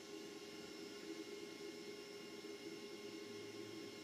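Faint, steady interference, a hiss with a buzz of several steady tones, on the sound of a Triax Tri-Link RF modulator played through the TV. It is the sign of the modulator picking up high-frequency noise from the Humax Freesat box's audio output, noise the modulator should be ignoring.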